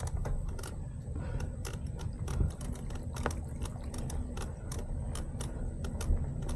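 Mountain bike riding over a rough dirt path: irregular clicks and rattles, a few each second, over a low steady rumble.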